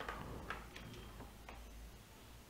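A few faint, irregularly spaced computer keyboard key clicks, about four in two seconds, over a low hum.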